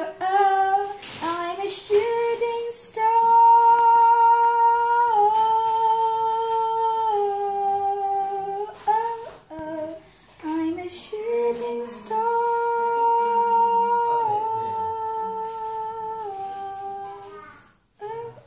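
A girl singing: shorter notes, then two long held notes of about five seconds each, each stepping down in pitch a couple of times before it ends.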